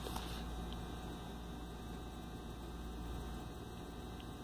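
A steady low electrical hum with faint room tone and nothing else clearly standing out.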